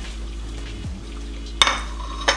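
A metal fork clinks once against a plate about a second and a half in, with a short ring after it.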